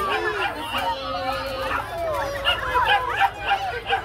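Crowd chatter mixed with many short, high yelps and squeals from small racing animals held in a wire starting pen.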